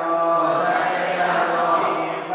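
A Buddhist monk chanting Pali verses in long, drawn-out notes.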